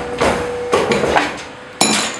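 Automatic wire-bending machine forming a scaffolding G pin: a run of sharp metal clanks as the ram and side slides bend the wire around the die, the loudest near the end, with a short steady tone under the first clanks.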